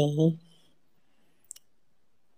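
The end of a spoken word, then quiet, broken by a single brief, faint click about one and a half seconds in.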